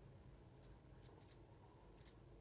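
Near silence: room tone with a few faint computer-mouse clicks.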